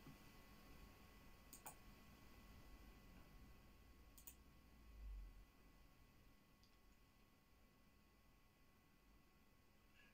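Near silence: room tone with two faint computer clicks, about a second and a half and about four seconds in, and a faint low thump about five seconds in.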